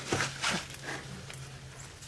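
A few soft scuffs and rustles of someone moving with the camera, over a faint low steady hum.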